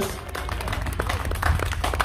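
Scattered clapping from a small audience, with a steady low rumble underneath.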